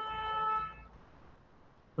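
A single short, steady pitched tone, like a toot, that starts sharply and fades out within about a second.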